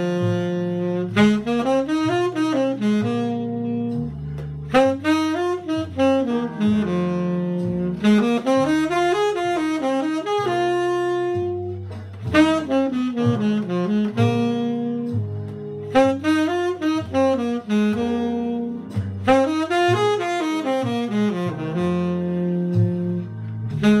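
Tenor saxophone improvising on a 12-bar blues, mixing fast runs of sixteenth notes and triplets that climb and fall every few seconds between held notes. A bass line from a backing track runs underneath.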